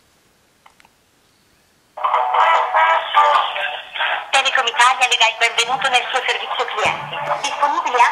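Automated 187 phone-line greeting playing through a smartphone's loudspeaker on speakerphone: after about two seconds of near silence, music and a recorded voice start, with the narrow, tinny sound of a phone line.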